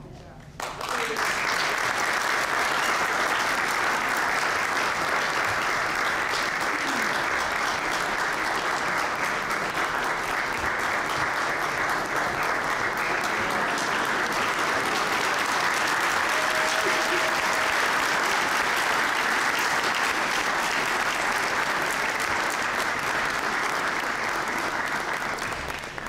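A large indoor audience applauding: dense, steady clapping that starts suddenly about a second in and keeps an even level for some 24 seconds before dying away just at the end.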